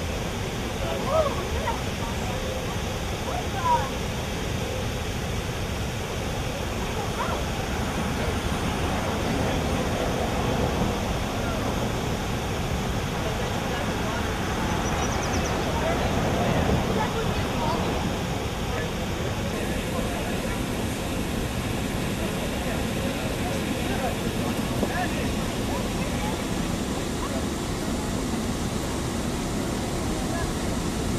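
Faint, indistinct chatter of people in the boats over a steady rushing background noise.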